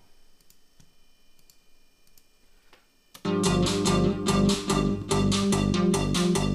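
A few faint clicks, then about three seconds in a psytrance loop starts abruptly and runs at a steady fast beat. Every part of it is synthesized on a Roland SH-101 analog synth: kick, bass, white-noise snare, hi-hat, woodblock-like offbeat and a melody with delay.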